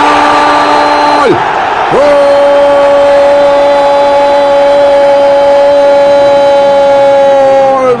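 A Spanish-language football commentator's drawn-out goal cry, "goooool": one long held note that breaks off about a second in for a quick breath, then is held again for nearly six seconds.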